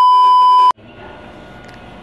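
TV colour-bar test-tone beep used as a transition effect: one loud, steady, high beep lasting under a second that cuts off suddenly, followed by a steady low hiss.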